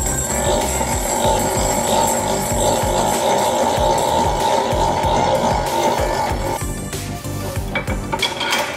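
Background music, with a power tool running steadily for about six and a half seconds as a socket spins the top nut off a front shock absorber's piston rod, then stopping.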